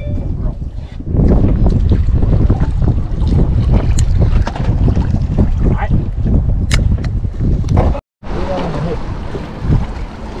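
Wind buffeting the microphone in a loud low rumble, starting about a second in, with a few faint clicks over it. The sound cuts out for a moment near the end.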